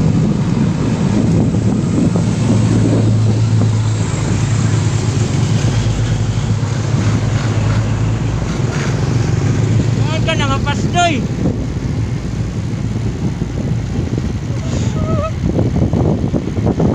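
Wind buffeting the microphone while moving through the street, over a steady low engine hum, with a few short voices about ten seconds in.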